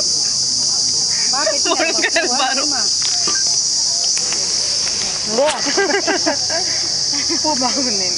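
A steady, high-pitched chorus of insects buzzing, with people's voices over it twice, about two seconds in and again past the middle.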